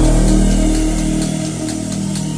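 Electronic dance music in a DJ mix: a long, heavy held bass note with steady overtones, its deepest bass dropping away a little after halfway through.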